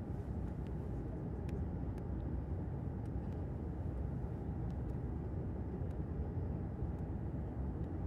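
Steady low cabin drone of a jet airliner in flight, with a few faint small clicks.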